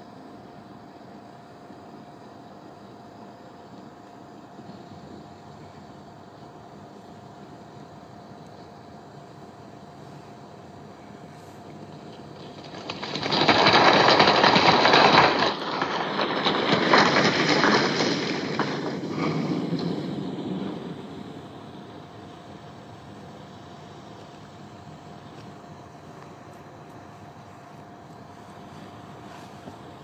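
A vehicle passing in the street, rising suddenly about a third of the way in, swelling twice and fading away over about eight seconds, over a steady hum of outdoor background noise.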